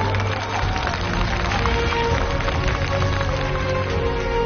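Audience applauding over steady, sustained instrumental music.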